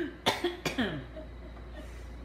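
A man coughing twice in quick succession, close to the microphone, with the two coughs under half a second apart.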